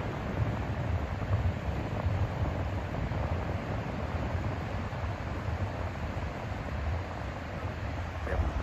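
Steady wind rumbling on the microphone over a hiss of surf on the shore.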